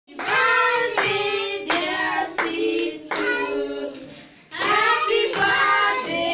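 Young children and women singing a birthday song together, with hand claps keeping time. The singing breaks briefly a little past the middle, then starts again.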